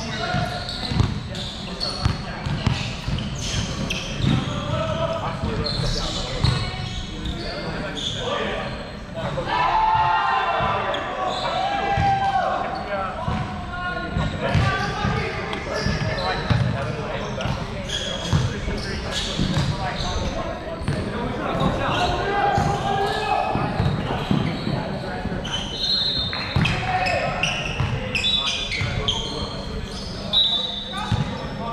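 Indistinct voices echoing in a large gym, with a basketball bouncing on the hardwood court throughout and a few short high squeaks near the end.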